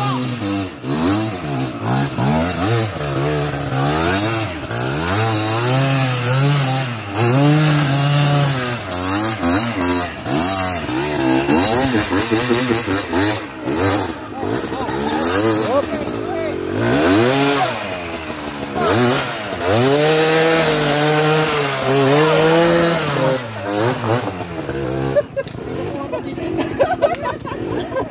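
Small Rusi trail motorcycle engine revving hard in repeated surges, its pitch rising and falling every second or two, as the bike labours up a steep dirt climb.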